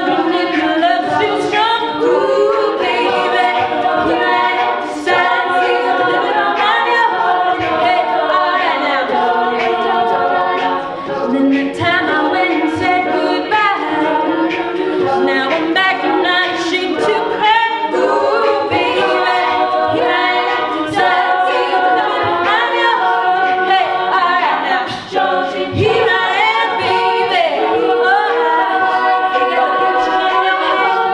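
All-female a cappella group singing: a lead vocalist on a handheld microphone over several backing voices in harmony.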